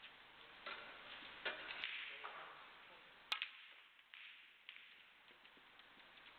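Snooker balls clicking and knocking on the table, a few light knocks and one sharp click about three seconds in, over a hushed arena.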